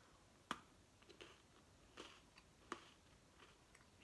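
A crunchy chocolate-coated Mikado biscuit stick bitten off with one sharp snap about half a second in, then a few faint crunches of chewing.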